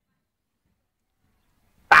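Near silence: the audio drops out completely, then a spoken voice cuts in sharply near the end.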